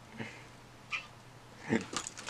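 Mostly quiet room with a few short, faint voice sounds, the clearest a brief murmur near the end.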